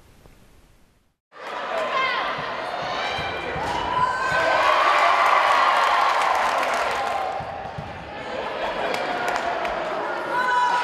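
Live sound of an indoor basketball game: the ball bouncing on the gym floor amid overlapping shouts and cries from players and spectators. It starts after about a second of near silence.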